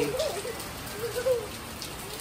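Heavy rain falling steadily on pavement and a wet street, an even hiss of drops.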